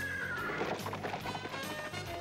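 A horse whinnying as it rears, then hoofbeats as it gallops away, over background music.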